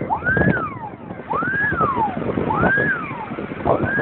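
Fire engine siren wailing, sweeping quickly up in pitch and then falling slowly, about once every 1.2 seconds.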